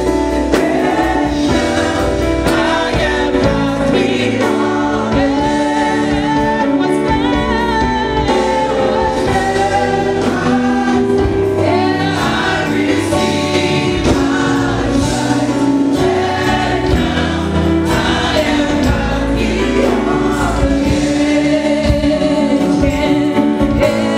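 Gospel choir of women's and men's voices singing into microphones, amplified, with live band accompaniment.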